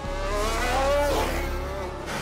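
Mercedes Formula 1 car's turbocharged V6 engine accelerating away from the pit lane, its note climbing steadily for about a second before falling to a lower pitch.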